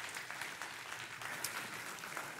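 A congregation applauding, many hands clapping steadily.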